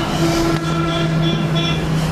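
A steady, unwavering pitched tone with many overtones, held throughout and cutting off just after the end.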